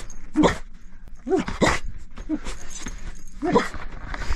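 A black-and-white collie-type dog vocalising in about four short, separate calls of rising and falling pitch, somewhere between yips and whines.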